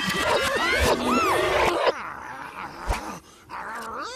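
Cartoon soundtrack: music with a character's wordless, gliding vocal sounds for about two seconds, then it drops much quieter, with a single soft knock near the three-second mark.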